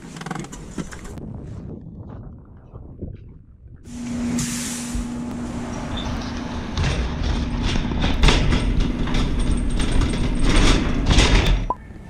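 A shopping cart rolling and rattling across a store floor with frequent clicks, over a steady hum that starts about four seconds in, after a few seconds of muffled noise.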